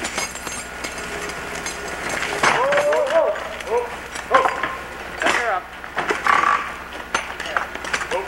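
Indistinct voices calling out short phrases over outdoor background noise, with a few faint clicks.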